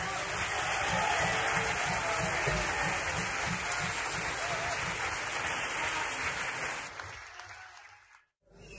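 Concert audience applauding, a dense steady wash of clapping that fades away about seven seconds in.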